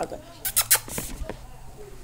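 A few sharp knocks and rustles of a handheld camera being swung around, the loudest two coming close together about half a second in.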